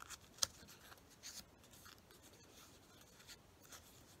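Faint crinkles and rustles of folded magazine paper being handled as an origami flap is untucked from its pocket, the clearest crinkle about half a second in.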